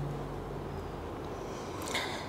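Quiet room tone with a faint steady low hum, as a soft background music tone fades out in the first half second; a soft intake of breath comes near the end.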